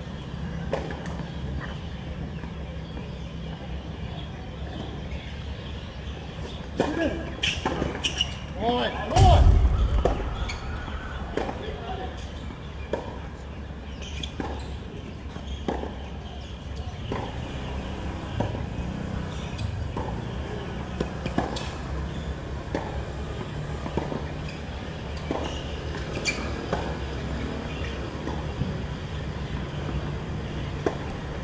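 A tennis point on an outdoor hard court: tennis balls struck by rackets and bouncing, as sharp pops about every second or so through a rally, over a steady low background hum. A loud voice, a shout or call, comes a little past the middle and is the loudest moment.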